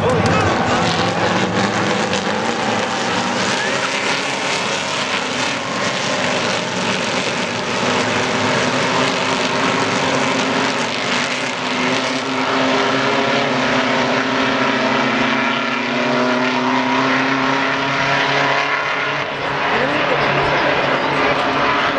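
Several Freightliner race trucks running hard on a circuit, their engine notes overlapping and rising and falling in pitch as they pass and pull away.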